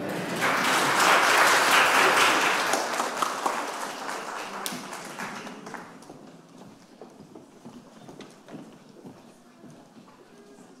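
Audience applause, swelling up in the first second, loudest for a couple of seconds, then dying away over about five seconds, leaving faint scattered knocks and shuffling.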